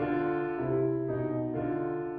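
Solo piano playing a slow ballad in A major: held chords over a low bass line, with the notes changing several times within the two seconds.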